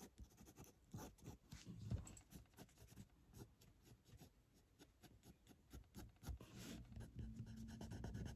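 Faint scratching of a fine-tip ink pen on a paper card: a steady run of quick, short hatching strokes as the drawing is shaded in.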